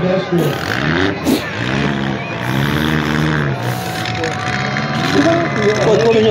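Demolition-derby compact cars' engines running and revving in the arena, mixed with a voice over a PA.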